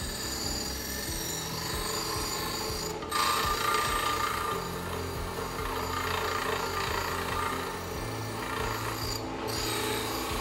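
Bench grinder's spinning wire wheel scouring rust and mill scale off a flat steel plate pressed against it, a continuous scratching hiss. The plate comes off the wheel for a moment about three seconds in, goes back on a little louder, and comes off again briefly near the end.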